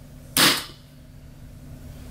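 A gas-powered airsoft shotgun fires a single shot about half a second in: one sharp pop that dies away quickly. The gun is a JAG Scattergun running on green gas.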